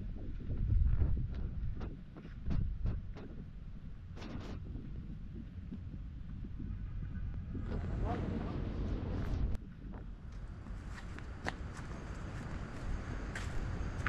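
Footsteps of someone walking a dirt and gravel path, with scattered clicks and rustles over a low rumble of wind on the microphone. The footsteps thicken into a denser stretch on loose stones from about eight to nine and a half seconds in.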